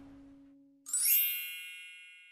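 A single bright chime-like ding sounds about a second in and rings out, fading away over a second or so. Before it, a low held music note fades out.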